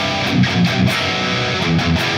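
Headless electric guitar played through the PolyChrome DSP McRocklin Suite amp sim on its high-gain "Distorted Dreams" preset, playing a distorted riff of ringing held notes over repeated low chugs.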